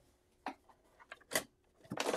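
Several short, quiet clicks and knocks as the front of a printer is handled around its paper tray, the loudest just past halfway.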